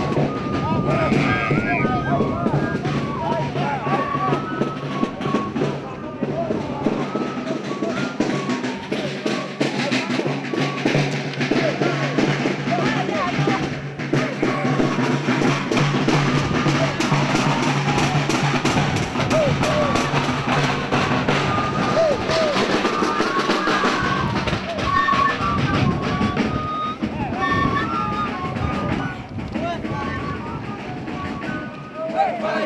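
Live Andean folk dance music: large hand-carried drums beating a steady rhythm under short high melodic notes, with voices throughout.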